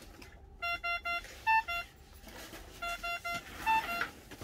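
Magnamed OxyMag ventilator alarm beeping: twice a run of three quick beeps followed by two more, the first of those two higher in pitch. It is the ventilator's high-volume alarm.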